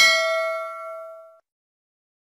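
A single bell ding sound effect: the chime that goes with clicking a notification bell icon. It rings with several clear tones together and fades away within about a second and a half.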